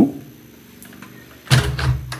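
A window being shut: a sudden thump of the casement against its frame about one and a half seconds in, after a short quiet stretch.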